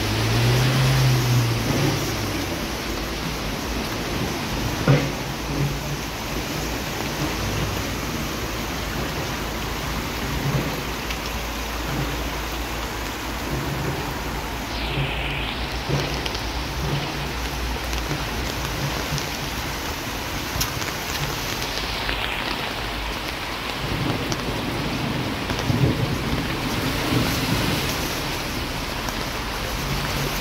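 Heavy downpour: a steady hiss of rain falling on a flooded street and on running runoff water. A louder low rumble comes in the first two seconds, and scattered light knocks occur throughout.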